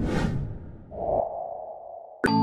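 Logo-reveal sound effect: a sudden whoosh that fades away over about a second, followed by a mid-pitched tone that swells up about a second in and dies down.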